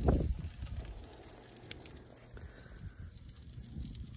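A brief low rumble of a phone being handled at the start, then faint steady outdoor background with one small click.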